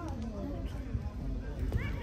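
Voices calling out across a football pitch, with a higher, sharper shout near the end, over a steady low rumble.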